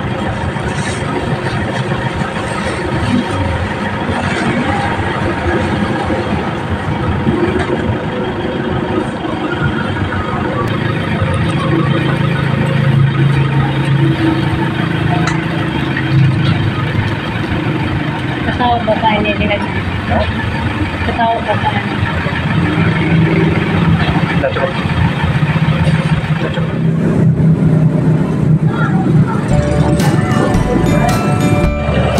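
Street noise: vehicle engines running with a steady low hum that swells twice, under indistinct voices.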